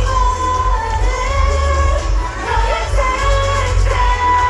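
A K-pop song with several women singing in held, sliding lines over a loud backing track with heavy bass, played through a stage sound system.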